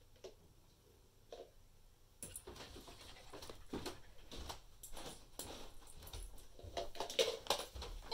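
A dog searching among upturned plastic cups on carpet: after a couple of faint taps as the last cups are set down, a quick irregular run of light taps, sniffs and paw patter starts about two seconds in and grows louder toward the end as cups are nudged and tipped over.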